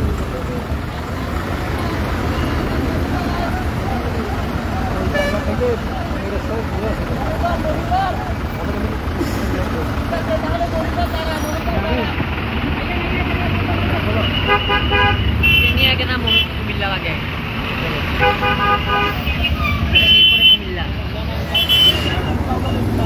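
Heavy road traffic crawling in a jam, with vehicle horns honking in repeated short blasts through the second half, the loudest near the end.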